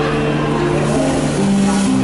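Amplified electric guitar playing sustained, ringing chords, changing chord twice in the second half, an instrumental passage of a pop song with no singing.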